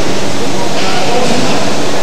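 Loud, steady noise of a large factory shop hall, with indistinct voices in it.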